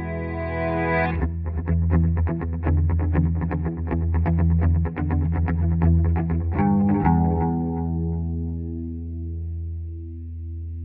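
Instrumental outro music: a held chord, then a run of quick, evenly spaced notes from about a second in, ending about seven seconds in on a chord that rings and fades away.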